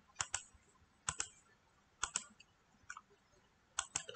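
Faint computer mouse clicks, about five times at roughly one-second intervals, most of them a quick pair of clicks.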